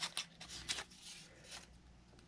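Construction paper rustling and crinkling as cut-out pieces are handled, in a few short, soft sounds, the clearest near the start.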